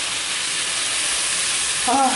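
Meat, shredded carrot and onion sizzling steadily in vegetable oil in a duck roaster.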